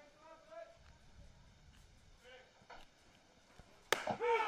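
Faint distant voices of players calling on a baseball field, then a single sharp pop just before the end as the pitch is delivered.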